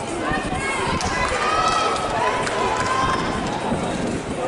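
Spectators shouting and calling out encouragement to runners on the track, several voices overlapping, some calls drawn out.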